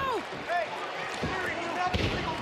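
Wrestling boots squeaking on the ring canvas, with a heavy thud near the end as a wrestler's body lands on the ring mat.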